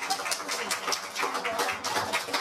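Laughter in quick, irregular breathy pulses, mixed with a little talking.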